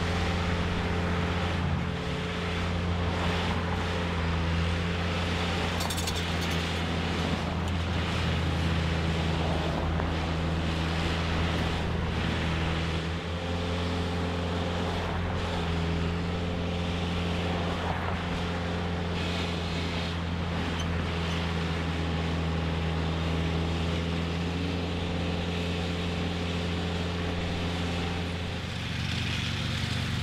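Diesel engine of a Sperling large rail saw machine running steadily at a constant speed, powering its hydraulics.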